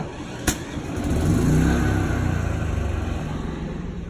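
A sharp click about half a second in, then a generator engine starting by remote and running up to speed, its pitch rising and then easing off as it settles.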